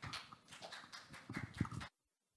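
Scattered applause from a small audience, a few hands clapping unevenly. It cuts off suddenly near the end.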